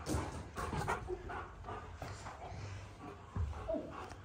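Alaskan malamute making a series of short vocal sounds in rough play, the loudest near the end.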